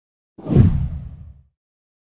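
A whoosh sound effect with a deep rumble underneath, swelling up about half a second in and dying away within a second.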